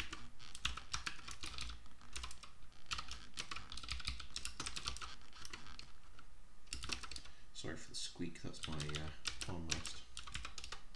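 Typing on a computer keyboard: irregular runs of quick keystroke clicks with short pauses between them. Near the end a low voice sounds briefly under the typing.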